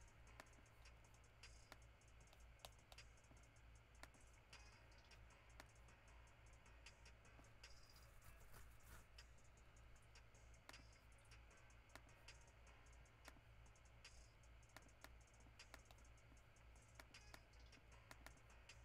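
Near silence: scattered computer mouse clicks and keyboard taps over a low steady hum.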